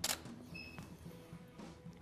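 A single shutter click from a Canon EOS-1D X Mark II DSLR taking a frame, followed about half a second later by a short, high electronic beep.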